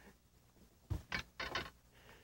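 A cluster of four or five quick clicks and knocks about a second in, from a freshly landed bass and the landing net being handled on the carpeted deck of a bass boat.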